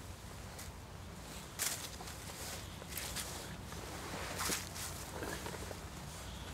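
Cord being wound around a wooden stake by hand: soft rustling and scraping of string against bark in a few short bursts, the loudest about a second and a half in.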